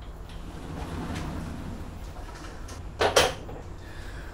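Steady low hum in a small room, with one brief loud noise about three seconds in.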